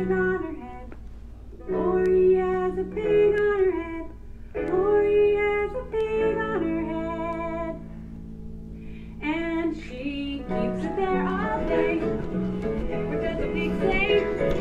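Recorded children's song: a woman singing to acoustic guitar, in short sung phrases with brief pauses between them.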